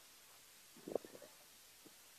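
Near silence, with one faint, brief, low murmur of a man's voice about a second in.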